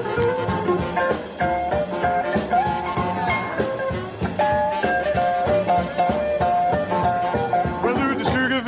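Instrumental break in an uptempo early rock and roll song: a lead line of held and stepping notes over a steady, driving beat.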